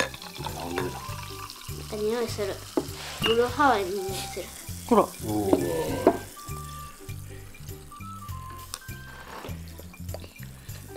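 Carbonated soft drink, a clear cola, poured from a glass bottle into a plastic cup and fizzing with a steady hiss as the bubbles rise and foam. Background music with a steady beat plays underneath.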